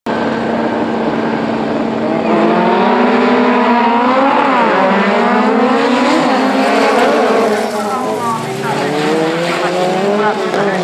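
Pack of jokamiesluokka autocross cars revving on the start line, then accelerating away together about two seconds in, several engines climbing and dropping in pitch over one another through the gear changes.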